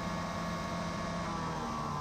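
Engine-driven Butler truck-mounted cleaning system running with a steady hum and its high-pressure pump engaged. The engine speed is being turned down toward 1,000 rpm.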